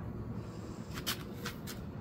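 A few brief scratchy clicks or rustles, one about a second in and two more close together near the end, over steady low background noise.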